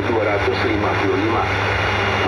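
A newsreader's voice from a shortwave broadcast of NHK World Radio Japan's Indonesian service, played through a radio receiver, over a steady hiss of shortwave static and a low hum.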